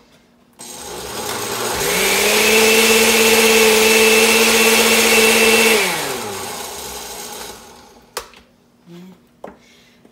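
Countertop blender blending chunks of melon with water. The motor starts about half a second in and rises in pitch to a loud, steady whine. Just before six seconds it winds down and fades out.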